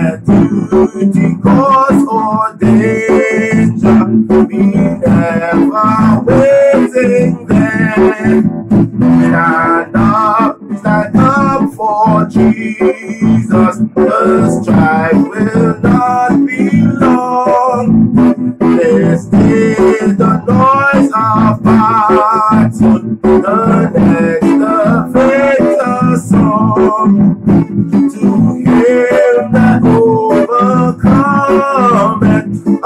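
A man singing a hymn to his own strummed acoustic guitar.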